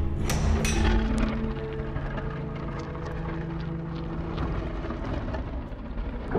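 A heavy stone door grinding open in a rock wall: a low rumble with crackling over the first second, running on steadily and easing near the end. Background music plays underneath.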